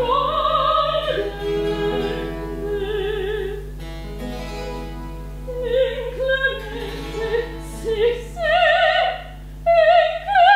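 A soprano singing a baroque opera aria with vibrato over a small continuo group of plucked strings and keyboard. The voice holds long notes, eases off briefly about halfway, then comes back in shorter phrases.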